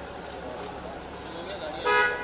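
Low background murmur, then near the end a short, loud car-horn toot with a steady pitch.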